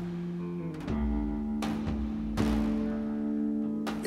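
Background music of slow plucked-string notes, each held and ringing, with a new note struck about once a second.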